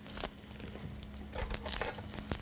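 Faint papery crinkling and rustling of a garlic clove's skin being peeled by hand. There is a short scrape near the start, then denser rustling with a few light clicks in the second half.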